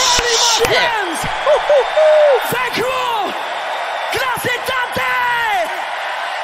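Arena crowd cheering and screaming at the end of a live song, with many overlapping whoops rising and falling over a wash of crowd noise.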